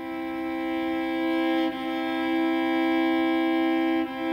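Cello bowing a sustained double-stop major third, two steady notes with the E on top, with one bow change a little under two seconds in. The third is tuned pure, to a just-intonation frequency ratio of 5 to 4.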